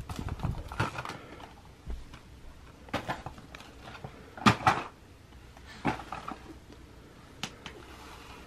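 Hollow plastic shape-sorter blocks clicking and knocking against the sorter's plastic lid as they are handled and dropped through its holes: a handful of scattered light knocks, the loudest two in quick succession about halfway through.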